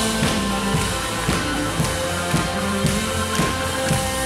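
A live rock band playing a song, with drum kit and guitars, keeping a steady beat of about two hits a second.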